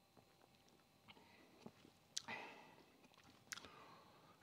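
Faint mouth sounds of a man drinking beer from a glass: small lip and tongue clicks as he sips and swallows, with a slightly louder short sound about two seconds in.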